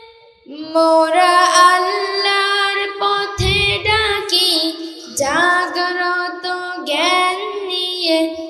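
A boy singing a Bengali Islamic devotional song (jagoroni) solo into a microphone in long, held melodic phrases, with no instruments heard. The singing pauses briefly at the start, and there is a short low thump about three and a half seconds in.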